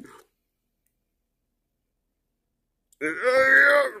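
Dead silence, then about three seconds in a man's drawn-out, high, strained groan lasting about a second, acting out the pain of straining.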